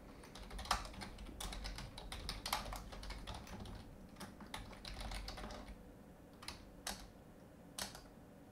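Computer keyboard typing: a quick run of keystrokes for about five seconds, then a few separate key presses near the end.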